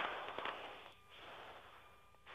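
Hiss and background noise on an aircraft radio channel between pilot calls, louder for the first half-second and then settling to a low, steady level.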